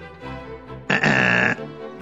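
Cartoon sound effects over background music: a low pitched sound in the first second, then a loud, steady high tone lasting about half a second.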